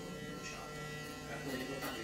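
Electric hair clippers running with a steady buzz while cutting a child's short hair.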